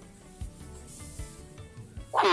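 Faint background music in a pause between speech: soft sustained tones with a few low beats, and a brief rustling hiss about halfway through.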